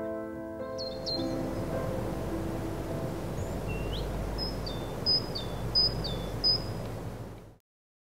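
The last notes of a piano die away in the first second, over a steady outdoor noise. A bird calls over it: a couple of high chirps about a second in, a rising call, then four two-note calls, each a high note dropping to a lower one, about two-thirds of a second apart. All sound cuts off suddenly just before the end.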